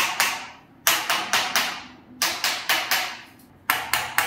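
A mallet striking a wooden chiropractic adjusting tool held against the neck and upper back, as a spinal adjustment. Sharp, quick knocks come in runs of about four, roughly four a second, with short pauses between runs.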